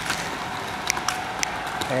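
Steady road and engine noise heard from inside a moving car, with a few light clicks.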